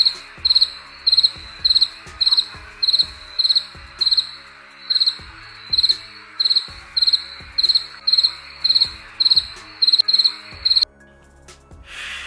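Crickets chirping in a steady rhythm, nearly two chirps a second, with faint low thumps underneath; the sound cuts off suddenly near the end.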